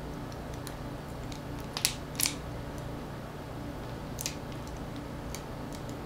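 Small sharp clicks and snaps of a small MP3 player's parts being prised apart and handled by hand, a handful of them spread out, the loudest two close together about two seconds in, over a steady low hum.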